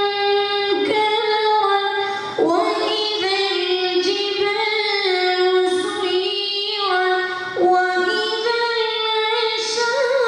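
A young contestant's voice reciting the Quran in a melodic, sung style, holding long ornamented notes that bend slowly in pitch, with a few short breaks between phrases.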